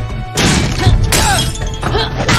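Dramatic action score with fight sound effects: two sharp crashes of something breaking or shattering, about half a second and just over a second in.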